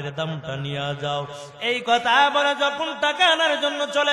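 A man's voice chanting a sermon in a sing-song, melodic delivery, amplified through microphones, the pitch rising and falling on drawn-out phrases; it grows louder about two seconds in.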